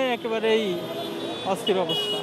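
A man talking in Bengali, with street traffic noise behind his voice.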